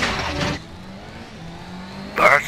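Car engine sound effect revving loudly, cutting off about half a second in and leaving a low, steady engine hum.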